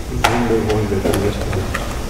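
Indistinct voices of people talking, in a hall with a low steady hum, with several light clicks and knocks.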